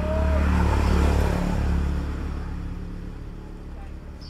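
Motor vehicle engine running with a low hum, loudest about a second in and then fading away.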